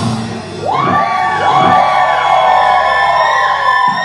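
A live rock band's song stops about half a second in. A steady high note rings on over a low drone that cuts off near the end, while the crowd whoops and yells.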